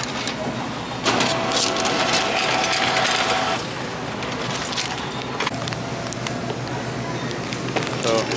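Self-checkout receipt printer printing: a buzzing whir that starts suddenly about a second in and stops after about two and a half seconds, over store background noise and a few handling clicks.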